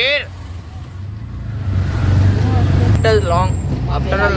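Auto-rickshaw engine and road noise heard from inside the open cabin: a steady low rumble that grows louder about two seconds in.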